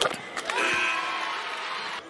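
Basketball arena crowd noise that swells about half a second in, after a sharp knock or two, as a free throw goes up.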